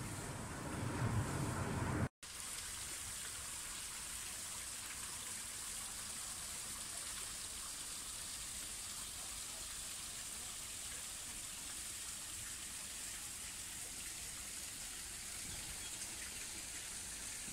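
Steady hiss of water trickling down an artificial rock waterfall into a pool. About two seconds in, the sound cuts out for an instant and comes back as the even splash of the falling water.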